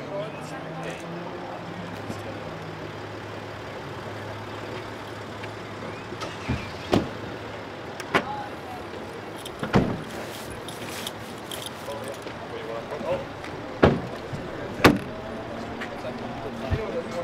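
A car engine idling with a steady low hum that fades after the first few seconds, against faint voices. Through the second half come about six separate sharp knocks, louder than anything else.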